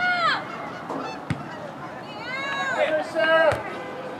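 High-pitched shouted calls from players on a soccer field, several short cries in bursts. Two sharp knocks are heard, about a second in and near the end.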